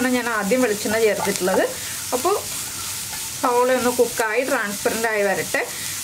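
Onions, green chillies and curry leaves sizzling in oil in a nonstick frying pan, stirred with a wooden spatula in short, quick strokes that scrape the pan. The stirring stops for about a second and a half, two seconds in, leaving only the sizzle, then starts again.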